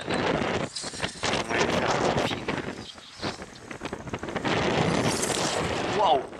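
Wind buffeting the microphone: a rough, gusty noise that swells and dips repeatedly.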